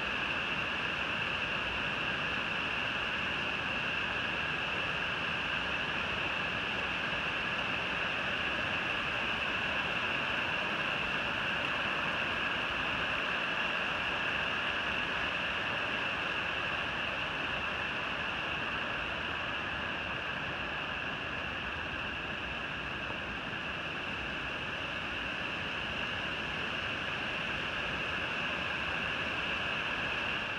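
Steady rushing of a waterfall and the river below it, an even noise that goes on without a break.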